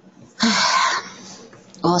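A person's short, loud, breathy vocal burst, about half a second long.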